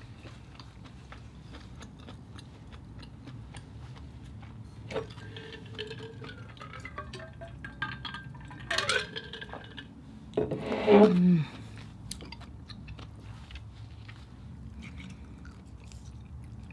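A person chewing mussels with small wet mouth clicks, then drinking water from an insulated bottle with swallowing and gliding gurgle tones. A short loud vocal sound falling in pitch comes about eleven seconds in, after the drink.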